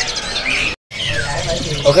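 Caged songbirds chirping in short high calls over low background voices. The sound drops out completely for a moment a little under a second in.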